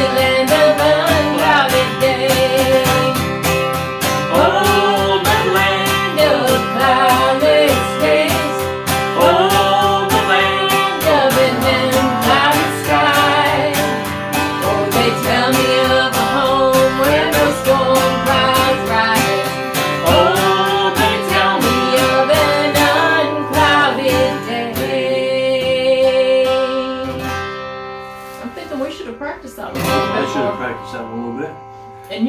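A man and a woman singing a gospel song together to a strummed acoustic guitar. The singing stops near the end and the guitar rings out and fades.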